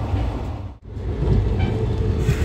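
Moving passenger train heard from inside the coach: a steady low rumble of wheels and carriage. It drops out abruptly for a moment a little under a second in, then carries on.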